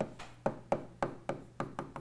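A stylus tapping and clicking on the glass of an interactive touchscreen while letters are written: about a dozen short, sharp ticks at an uneven pace.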